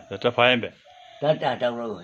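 A man talking in short phrases, with a brief pause about halfway through.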